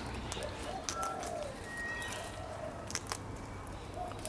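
Sulphur-crested cockatoo eating seed from an open palm, its beak picking and cracking the seeds in scattered sharp clicks.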